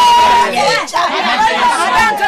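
Several people talking loudly over one another, one voice holding a drawn-out note that breaks off about a quarter of the way in.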